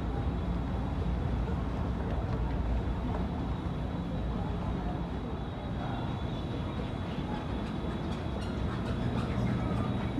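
Steady low rumble of an inclined moving walkway (travelator) running, with a faint high steady whine above it.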